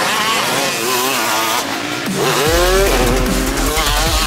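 Several motocross dirt bikes on the track, their engines revving up and down as the riders accelerate and shift, with one strong rev about two and a half seconds in. A deep steady low rumble comes in at the same moment.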